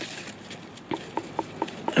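Fingers tapping a butternut squash five times in quick succession, about four taps a second, each a short hollow knock. The squash is being tapped to test its ripeness, and it sounds hollow.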